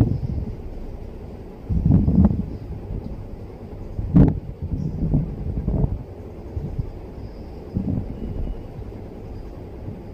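Cloth of black trousers rustling and bumping as they are handled and the thread pulled through during hand-sewing, in irregular low bursts, with one sharp click about four seconds in.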